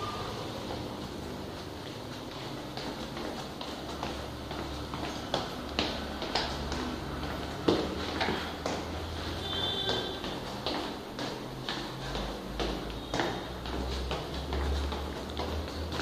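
Footsteps going down a flight of stairs: irregular taps and knocks, a few a second, over a low rumble of the handheld camera being carried.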